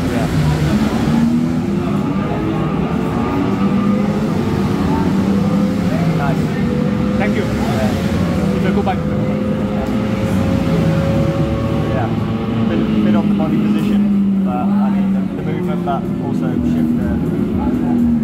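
Ducati V4 S motorcycle engine heard through a TV speaker from on-track footage, running at speed, its pitch rising slowly for several seconds in the middle as the bike accelerates down the straight. Indistinct voices talk under it.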